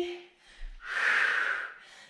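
A woman exhaling audibly: a breathy rush of air lasting about a second, starting about half a second in. It is the out-breath cued for the downward phase of an exercise.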